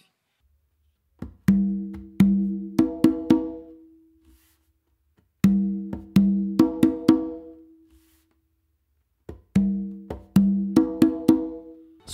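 Meinl congas played by hand: a short tumbao phrase of ringing open tones on two drums, one lower and one higher, mixed with sharp slaps and light ghost-note taps. The phrase is played three times, with a pause of about a second between each.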